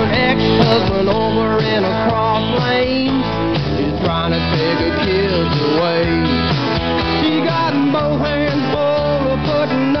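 Instrumental break in a country-rock song: a full band plays while a guitar takes the lead, its notes bending up and down in pitch.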